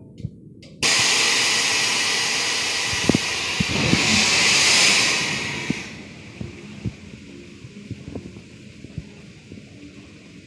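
A coal hopper wagon unloading into a track hopper: a loud rushing hiss starts suddenly about a second in, swells in the middle and dies away after about five seconds. Scattered light knocks follow.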